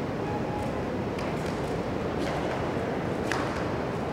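Steady background noise of a large sports hall, with a few sharp clicks from a kung fu performer's movements on the mat, the loudest about three seconds in.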